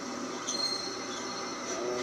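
Diesel railcar of the Kashima Rinkai Railway at a station platform, running steadily, with a thin high squeal through the middle.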